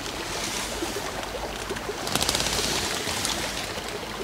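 Wind on the microphone: a steady rushing noise that swells for about a second, roughly halfway through.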